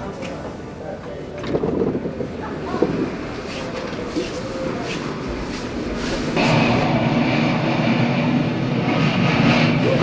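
Steady rush of blowing air with a low machine hum, cutting in suddenly about six seconds in: a fan blowing hard, "pretty windy". Before it, a few scattered knocks and faint voices.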